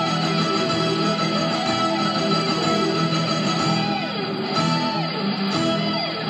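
Instrumental Christmas music with electric guitar, playing from the car's FM radio tuned to the light display's broadcast station.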